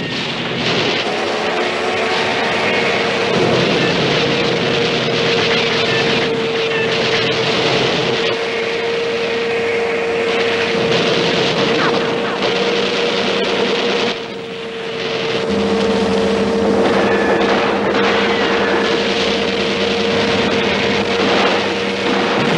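Film action soundtrack: heavy, continuous gunfire from rifles, pistols and a machine gun, over a steady droning tone held nearly throughout, with a second, lower drone joining a little past the middle.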